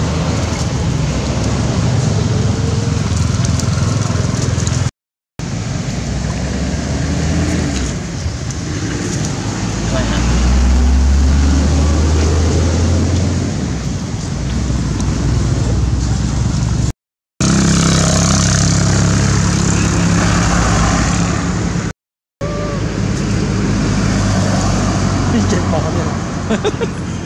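Road traffic and people talking in the background, with a heavy low rumble about ten to thirteen seconds in, as of a vehicle passing. The sound breaks off briefly three times at edits.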